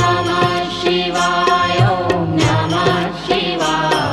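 Indian devotional music: a sung melody with ornamented, wavering notes over repeated drum beats.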